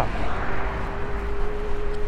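Antwi H10 250-watt electric scooter climbing a hill at about ten to twelve miles an hour: its motor whines as a steady tone that comes in about half a second in and rises slowly in pitch as it speeds up, over wind noise and road rumble.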